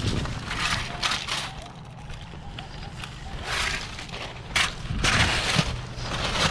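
Long-handled perforated steel sand scoop digging into pebbly lakeshore gravel: stones crunching and scraping against the metal in several short bursts, with one sharp knock a little past halfway.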